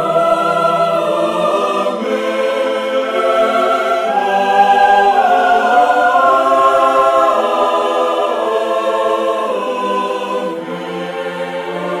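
Choir singing a slow threefold Amen in long held chords, easing off a little near the end.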